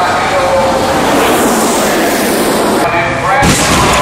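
A stunt car crashes onto another car: a sudden heavy impact of metal about three and a half seconds in, heard over people's voices.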